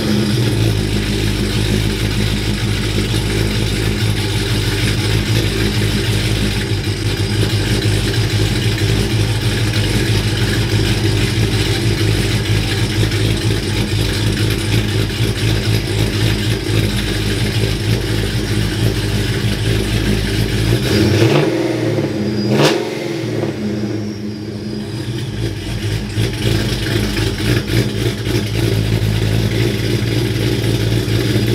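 Ram 1500 pickup's Hemi V8 idling steadily. About 21 seconds in the engine note briefly changes, with a sharp click, then settles back into a steady idle.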